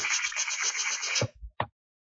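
A person making a creature's answering call with the mouth: a raspy, fast-fluttering hiss, about ten flutters a second, lasting just over a second, then two short clicks.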